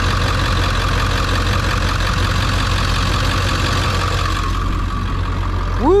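Ford 7.3-litre V8 diesel engine idling steadily, heard from under the truck: a low, even rumble with a faint steady whine above it.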